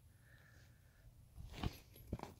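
Near quiet, with a faint thin tone in the first second and a few short faint knocks in the second half.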